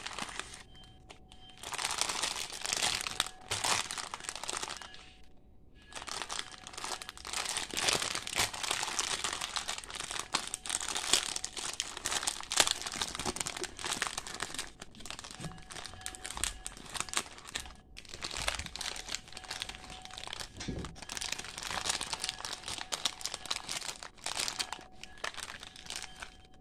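Plastic snack packaging crinkling as it is handled: a large outer pack and a strip of small plastic candy pouches. The crackling comes in long spells with short pauses about five seconds in and again around eighteen seconds.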